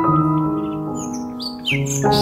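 Soft instrumental background music with slow piano-like notes. A few short high chirps like birdsong come in the second half, and a new chord enters near the end.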